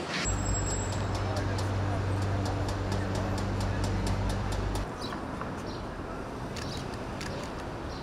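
City street traffic noise. A steady low hum runs for the first four and a half seconds and then cuts off, leaving quieter traffic noise with scattered clicks.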